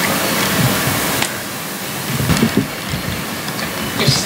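Audience applause, dying down about a second in, with low bumps from a microphone being handled and adjusted on its stand.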